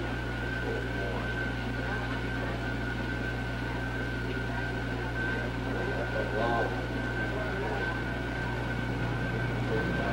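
Steady low electrical hum with a thin, steady high whine held over it, the whine cutting off at the very end, under faint murmured voices.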